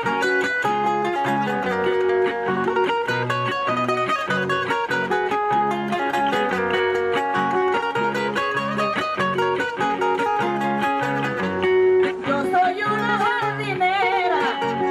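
Acoustic guitar playing a Panamanian torrente, the melody used for décima singing, in a run of quick plucked notes over a rhythmic bass line. Near the end a woman's voice comes in with a wavering line.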